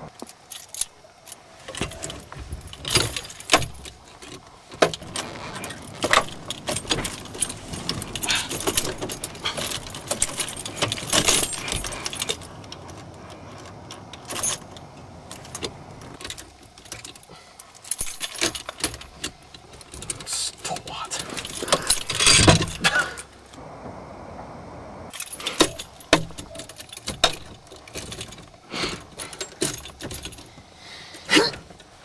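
Irregular metallic rattling, clicking and clanking of a Club steering-wheel lock being fumbled against a car's steering wheel, with one louder clank about two-thirds of the way through.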